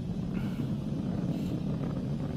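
Falcon 9 rocket in powered ascent, heard as a steady low rumble through the launch broadcast's audio.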